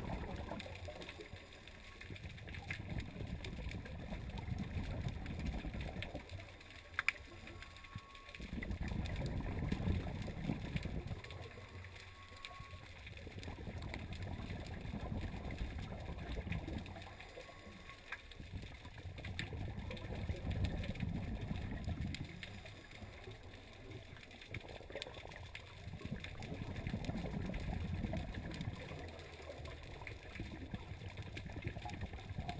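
Scuba regulator exhaust bubbles from a diver's exhaled breath, heard underwater through a GoPro's waterproof housing. A low bubbling gush comes about every five to six seconds, with quieter gaps between as the diver inhales.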